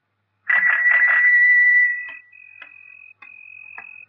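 A bell rung with a few quick strikes, its bright ring fading away over about a second and a half. A fainter, steady high-pitched tone follows, with soft ticks about every half second.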